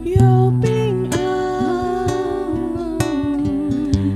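Two women singing a Mandarin worship song in long held notes, over a strummed acoustic guitar.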